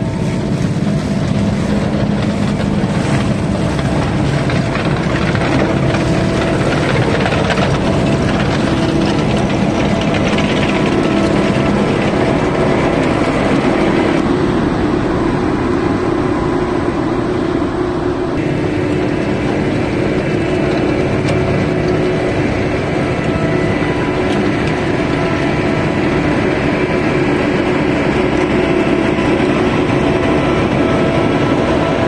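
Vervaet self-propelled sugar beet harvester at work, its engine and lifting and elevating gear running with a steady drone, with a tractor pulling a trailer alongside.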